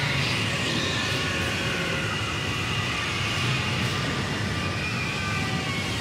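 Anime sound effect of a whirlwind cataclysm: a steady roar of rushing, howling wind that holds at an even level throughout.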